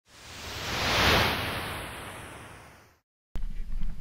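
A whoosh of noise that swells to a peak about a second in and fades away over the next two seconds, with a faint falling whistle in it, followed by a moment of dead silence. Near the end, outdoor background noise with a low hum cuts in abruptly.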